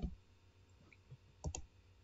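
Two quick computer mouse clicks about one and a half seconds in, over quiet room tone.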